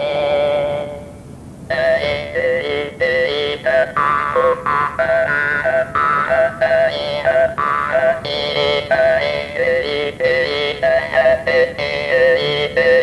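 Hmong ncas (jaw harp) playing: one held note that fades over the first second, then, after a short break, a quick run of short notes whose overtones shift like speech vowels as the player 'speaks' Hmong words through the instrument.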